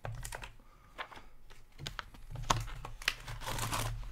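Foil trading-card pack wrappers crinkling and rustling as packs are handled, with light clicks and taps of cardboard boxes being moved.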